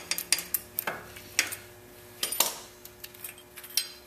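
Pliers clinking and scraping on the front hub's axle nut, with several sharp metal clinks at uneven intervals, as the cotter pin and the nut's lock cover are worked off.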